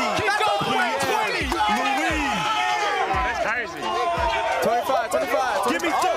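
Several men shouting encouragement over one another, loud and unbroken, as a lifter grinds out the last reps of a 225-lb bench press set. A low thud sounds about once a second underneath.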